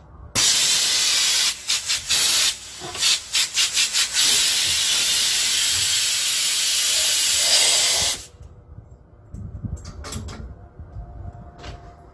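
Compressed air hissing from a paint spray gun on an air hose: a few short trigger bursts, then held on steadily for about four seconds before cutting off suddenly.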